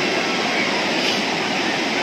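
Steady, even rushing of water from river rapids close by.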